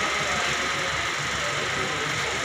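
Steady, fairly loud background noise with faint, indistinct voices in it.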